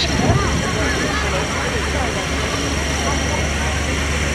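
Engine-driven fire pump running in a steady low drone, with an even hiss of water from the hose jets and faint voices in the background.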